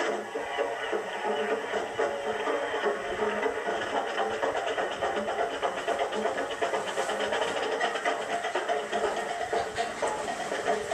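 High school marching band playing on parade, brass with the drumline, the bass drums struck in a steady beat; the sound comes off an old television broadcast.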